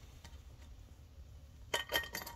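Low steady room hum, then near the end a few light metallic clinks, as of small metal parts or tools being handled.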